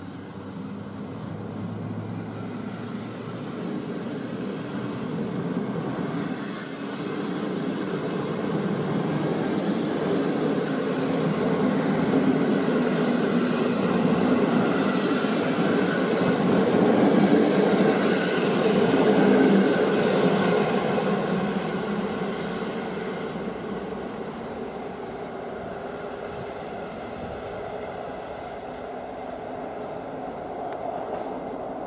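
Passenger coaches of an EP09-hauled train passing at speed, a continuous noise of wheels running on the rails. It grows to its loudest about halfway through, then fades as the last coach draws away.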